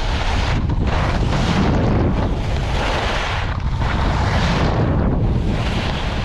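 Skis scraping and hissing over packed snow, the scrape swelling with each turn about every second and a half, over steady wind buffeting the microphone.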